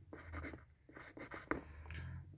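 Pen scratching on paper in a run of short writing strokes, with one sharp tap about one and a half seconds in.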